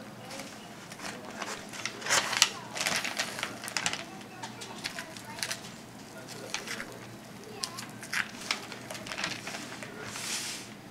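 A knife slicing and hands pulling apart the muscles of a raw deer hind quarter on paper: a run of short crackling, scraping clicks, busiest from about two to four seconds in.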